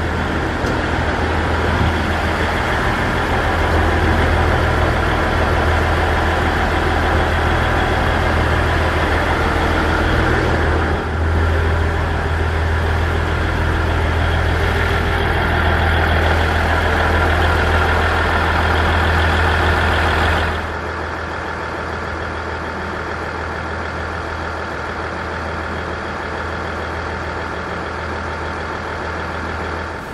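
Diesel railcar engine idling while stopped at the station, a steady low hum. About two-thirds of the way through it drops to a quieter, duller level.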